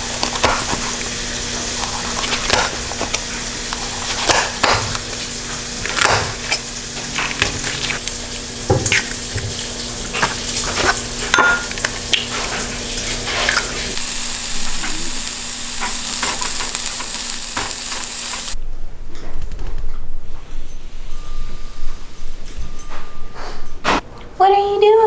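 Food sizzling as it fries in a pan, a steady hiss with scattered clicks and knocks of utensils and kitchen work. About three-quarters of the way through the sizzle cuts off suddenly, leaving a quieter stretch with a few faint clicks.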